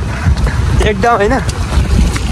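Low rumble of wind buffeting the microphone while moving, with a voice speaking about a second in.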